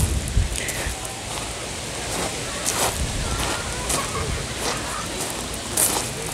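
Outdoor ambience: a steady hiss, with faint voices of people talking in the background and wind rumbling on the microphone at the start.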